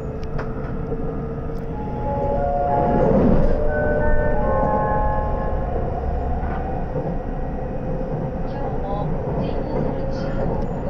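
A JR West 681-series electric train running, heard from inside a motor car: a steady low rumble of running noise that grows louder for a couple of seconds. Through the middle comes a run of held tones at several different pitches, one after another and overlapping.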